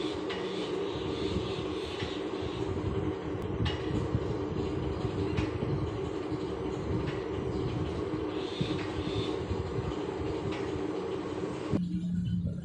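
Metal lathe running steadily, spinning an aluminium multi-groove V-belt pulley in its four-jaw chuck, with a faint tick repeating about every second and a half. Its running noise cuts off just before the end, leaving a lower hum.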